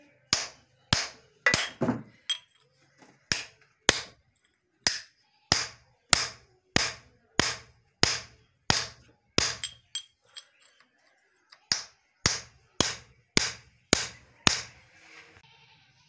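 Steady hammer blows, about two a second, striking metal to drive tight the part that holds the bars of an oil expeller's cage. Each blow is a sharp tap with a short ring, and the blows pause for a moment past the middle.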